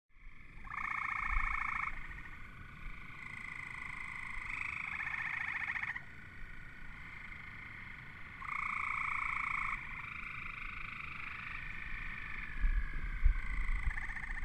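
Frogs calling in a series of pulsed trills, each one to three seconds long, some overlapping at different pitches.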